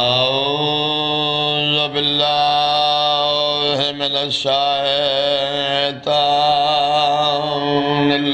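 A man's voice chanting a salawat (blessing on the Prophet and his family) through a microphone, in long held melodic phrases with brief breaths between them.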